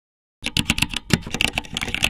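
Typing sound effect: a quick run of key clicks, about ten a second, starting about half a second in.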